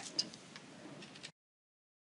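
Faint room hiss with a few small clicks, cutting off to dead silence a little over a second in.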